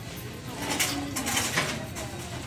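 A few short light clicks and rattles, bunched about a second in, over a low steady background.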